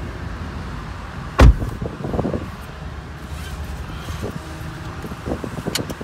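A car door of a 2016 Nissan Rogue shut from inside with one heavy thump about a second and a half in, followed by a few softer knocks and rustling.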